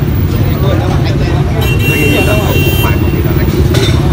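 A motor vehicle engine running steadily close by, under faint voices, with a brief high-pitched whine about a second and a half in.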